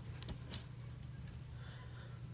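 A few faint, light clicks of clear plastic crystal-puzzle pieces being handled, all within about the first half second, over a steady low hum.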